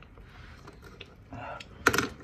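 A quiet room with a few faint clicks and a brief murmured voice, then one sharp click near the end.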